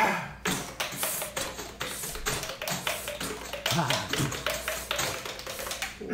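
Percussion quartet playing body and mouth percussion: a dense, irregular run of quick taps, slaps and pops made with the hands on the cheeks and mouth, with a few short vocal sounds mixed in.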